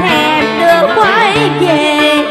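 Vietnamese tân cổ (vọng cổ-style) song: a woman's amplified voice singing a wavering line with vibrato over instrumental accompaniment with held low notes.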